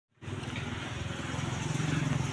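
A motorcycle engine running on the road close by, a steady pulsing rumble that grows a little louder toward the end.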